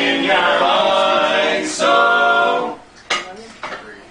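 Barbershop quartet singing a cappella in close harmony, moving through chords and ending on a held final chord that stops about two and a half seconds in. A couple of sharp clicks follow.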